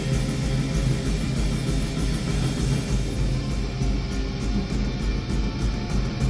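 Rock band playing live: electric guitar, bass guitar and drums at a fast, steady beat.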